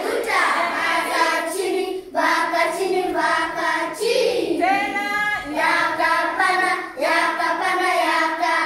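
A class of schoolchildren singing together, in short phrases of held notes with brief breaks between them.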